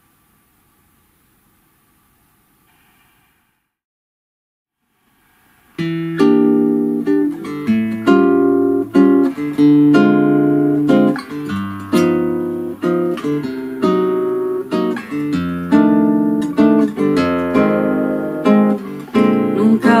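Near silence for about six seconds, then a nylon-string classical guitar plays a plucked introduction, single notes over a bass line, in the slow valsa-choro (choro waltz) arrangement of the song.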